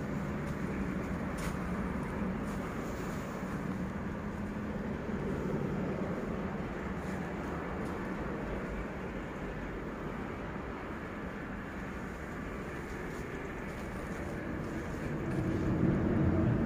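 Steady low hum and rumble of background noise, even throughout, with no distinct events.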